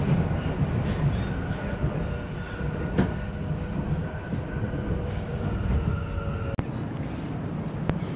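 Vienna U-Bahn metro car running, heard from inside: a steady low rumble with a faint steady whine. There is a single click about three seconds in, and the whine stops abruptly about six and a half seconds in.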